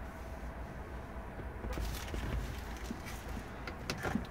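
Low rumble of a handheld camera's microphone being moved about inside a parked car, with a few faint clicks in the second half.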